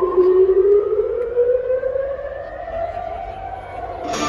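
A siren-like tone played through the arena sound system, rising slowly and steadily in pitch.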